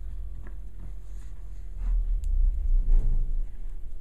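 A solenoid valve being screwed by hand into a trim tab hydraulic power unit: faint clicks and handling sounds over a low rumble that grows louder past the middle.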